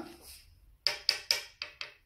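A quick run of about six sharp clicks or taps, a little under a second long, starting just under a second in.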